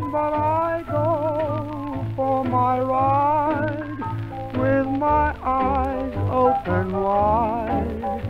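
1930s British dance band playing an instrumental passage between vocal lines: melody notes with a wavering vibrato over a steady beat in the bass. The sound is thin and muffled, with little treble, like an early shellac recording.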